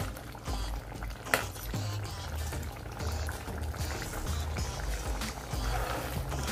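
A pot of stew bubbling on the stove while a metal ladle stirs it, with one sharp clink of the ladle against the pot about a second in. Background music with a low pulsing beat runs underneath.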